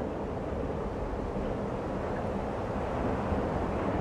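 Steady low rumbling noise without any pitch, swelling slightly near the end.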